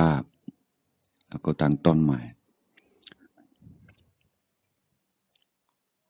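A man's voice speaking a few words in Thai into a microphone, then a few faint clicks and near silence.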